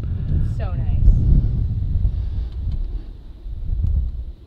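Low, uneven rumble of wind buffeting the microphone, with a faint voice briefly about half a second in.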